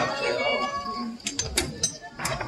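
High-pitched voices calling out, followed by a few sharp clicks or taps in the second half.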